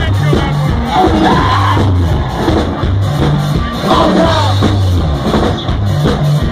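Live rock band playing loud: drums, bass and electric guitar, with repeated sung phrases rising and falling over the top.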